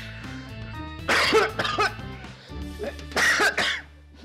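A man coughing in two loud fits, about a second in and again about three seconds in, over soft background music.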